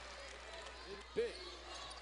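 A basketball bouncing on a hardwood court, one clear bounce a little over a second in, over faint arena background.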